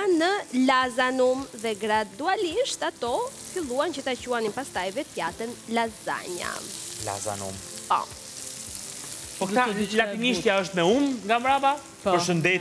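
A pan of zucchini and red onion frying in olive oil, with a steady sizzle that is clearest in a gap in the talk past the middle. A person's voice talks over it for much of the time.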